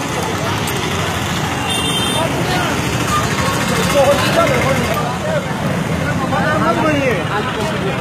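Steady street traffic noise with people's voices talking in the background, louder around the middle and again near the end.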